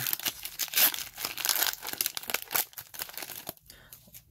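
Foil wrapper of a Pokémon trading card booster pack crinkling as it is torn open by hand, a dense crackle that thins out near the end.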